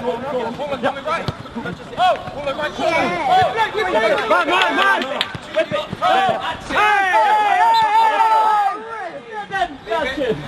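Several men's voices shouting over one another during a football match. The shouting is loudest for about two seconds just after a tackle, near the end.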